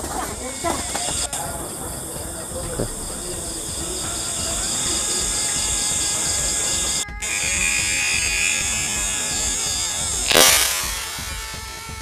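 Steady high buzzing chorus of night insects, pulsing evenly, with a brief loud rush of noise about ten seconds in.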